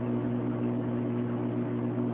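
Steady low electric hum with an even buzz, typical of an aquarium pump running.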